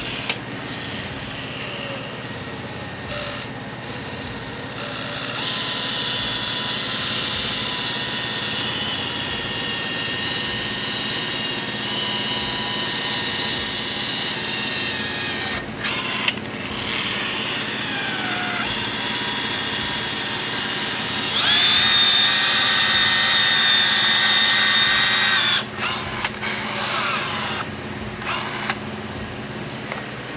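Cordless adhesive gun whining steadily as its motor drives the plunger, pushing a bead of urethane onto the edge of the windshield glass. It stops briefly about halfway through, then runs louder and higher for a few seconds about two-thirds of the way in, and stops and starts a few more times near the end.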